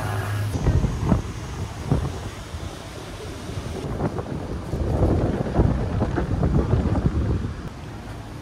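Wind buffeting the microphone: an uneven low rumble that gusts and fades, strongest from about five to seven seconds in.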